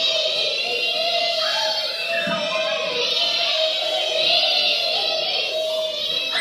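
A group of children singing along with music.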